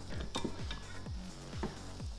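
Quiet metallic clinks and knocks as a main bearing shell and the crankshaft of a Subaru FB25 engine are handled and lifted out of the split engine case. Background music with a steady beat runs underneath.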